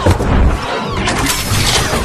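Dubbed robot-transformation sound effects: a heavy low hit at the start, then about a second in a dense crashing, shattering clatter with sweeping tones through it.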